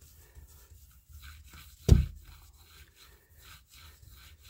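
Paracord pulled back and forth over a shop-towel strip wrapped around a steel crankshaft journal, spinning the crank: faint, repeated rubbing strokes of cord and rag working through polishing compound. A single sharp knock about two seconds in is the loudest sound.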